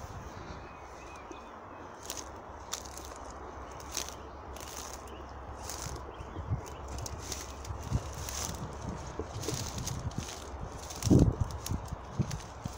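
Footsteps brushing through long grass, with scattered light crackles and rustles, and a stronger low thump about eleven seconds in.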